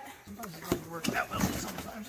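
Faint, indistinct voices talking in the background, with a single light knock a little before one second in.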